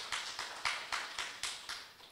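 Light hand clapping from the congregation, sharp claps about four or five a second, fading out near the end.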